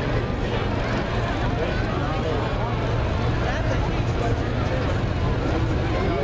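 Crowd of spectators chattering, many voices overlapping, over a steady low mechanical hum.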